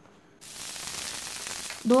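Water sizzling on a hot black dosa tawa (griddle), a steady hiss that starts abruptly about half a second in. It is a sign of the tawa being cooled down to a moderate heat before the next dosa is poured.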